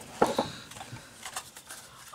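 Cardboard packaging being handled: a couple of sharp taps about a quarter second in, then faint rustling and light knocks.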